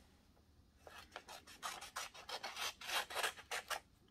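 Scissors cutting through sheet paper in a quick run of short snips, starting about a second in.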